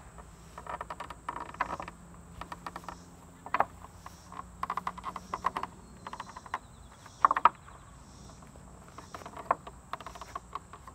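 Wooden pegs knocking and rattling in the holes of a wooden peg-board beam as a climber hanging from it pulls them out and jams them into the next holes: irregular sharp knocks, the loudest about three and a half and seven seconds in.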